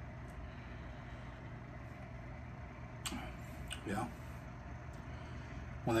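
A steady low mechanical hum under quiet room tone, with a short click about halfway through and a brief spoken 'yeah' shortly after.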